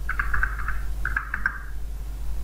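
Computer keyboard typing: two quick runs of keystrokes, about a second apart, over a steady low hum.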